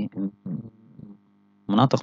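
A man lecturing in short fragments of speech, with a pause of about a second in the middle. A faint steady electrical hum runs under the voice and through the pause.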